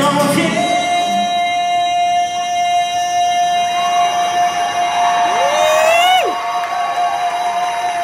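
A male lead singer holding one long, high, steady note over the PA in a large hall, with little accompaniment under it. About five seconds in, a second voice sweeps up in pitch over the held note and breaks off.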